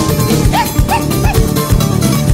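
Live acoustic band playing an instrumental passage: strummed acoustic guitar over drums and hand percussion with a steady beat. Three short high notes bend up and down over the top in the first second and a half.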